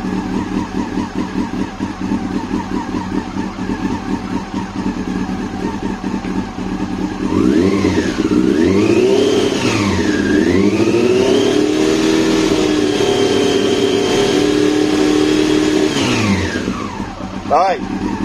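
Yamaha R6 inline-four engine idling, then revved about seven seconds in, rising and falling twice before being held at a steady higher speed (around 4000 rpm) for a few seconds, and dropping back to idle near the end. The engine is held up in revs so the stator's AC output between two of its coils can be read under load.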